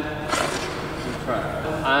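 An ice-skate blade scrapes briefly on the ice about half a second in, as the skater presses into an edge coming out of a spin, over a steady background hiss. A man starts speaking near the end.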